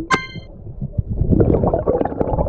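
Glass bottle clinking once underwater: one sharp knock with a short ringing. From a little over a second in, a growing rush of bubbling water noise.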